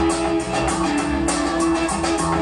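Live band playing an instrumental passage: electric and acoustic guitars over a drum kit keeping a steady beat.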